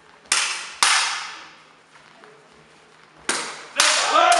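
HEMA sabres striking in a fencing exchange: four sharp cracks in two quick pairs, one pair shortly after the start and one near the end, each ringing on in the hall's echo.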